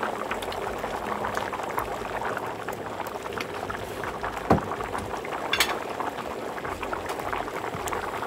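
A large aluminium pot of basmati rice boiling hard in its stock on a gas burner, making a steady dense bubbling and popping. A couple of sharper pops come midway.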